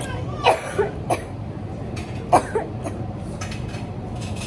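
A person coughing in short bursts: three about half a second in, then a louder pair a little past two seconds.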